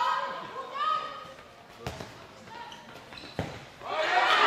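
A handball striking the hard court floor twice, sharply, in the second half. Players' shouts come at the start.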